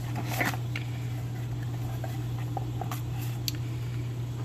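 Small cardboard product box being opened and handled: soft scraping with a few short sharp taps and clicks, over a steady low hum.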